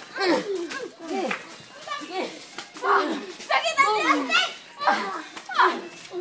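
Several children's voices shouting and calling out excitedly, one after another, during rough play-fighting.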